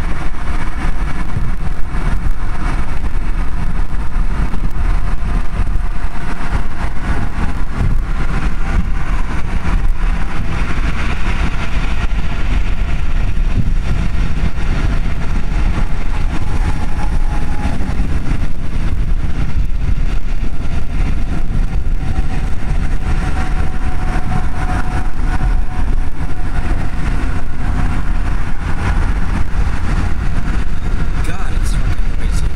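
Car cruising at highway speed, heard from inside the cabin: steady road, tyre and engine noise with a loud low rumble.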